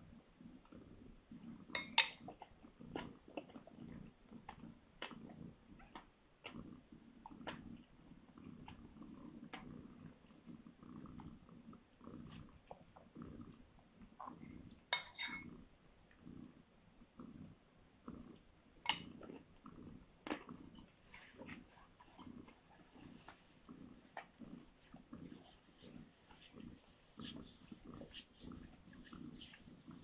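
Newborn kittens nursing at their mother: two brief high squeaks, about two seconds in and again near fifteen seconds, with soft clicking from suckling over a low, faint pulsing sound.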